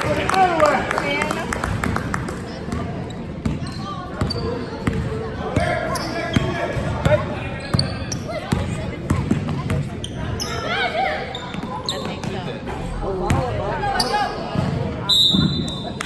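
Basketball game sounds in a large gym: a ball bouncing on the hardwood floor in short knocks, under spectators' talk and chatter, with the hall's echo.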